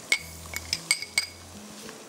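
A metal spoon clinking against a small glass bowl as ginger-garlic paste is scraped out of it: several light, ringing clinks in the first second and a half.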